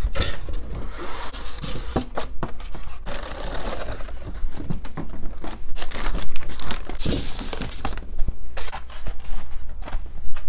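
Plastic packaging crinkling and rustling as a plastic-wrapped RC truck and a bag of parts are handled out of their box, an irregular crackle with scattered short knocks and clicks.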